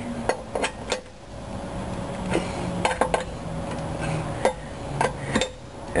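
Metal clinks and taps of a lug wrench's socket end being fitted onto the lug nuts of a steel wheel and turned, as the nuts are tightened one after another. A dozen or so separate sharp clinks come in small clusters near the start, in the middle and near the end.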